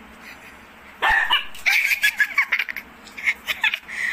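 Dogs yipping and barking in play, a rapid run of short, sharp, high-pitched sounds starting about a second in.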